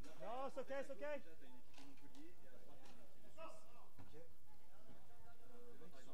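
Voices calling out on the court, with one louder, quickly wavering call in the first second and weaker voices after it. A few faint knocks come through.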